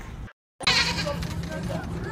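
A goat bleating, starting right after a brief dead-silent gap, with voices and a faint steady hum underneath.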